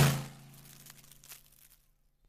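Cartoon sound effect of a car rushing past close by, its whoosh and engine hum dying away within about half a second, then near silence.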